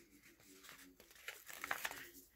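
Faint crinkle and rustle of a paper sticker being peeled off its sticker-book backing sheet, in a few soft ticks in the second half.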